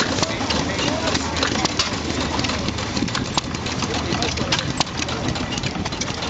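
Stover hit-and-miss gas engine running slowly, with many sharp clicks, powering a belt-driven water pump; water splashes into a tub.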